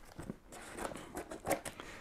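Scissors slitting the packing tape on a cardboard box: faint scraping and small clicks of blade on tape and cardboard, with a slightly louder click about one and a half seconds in.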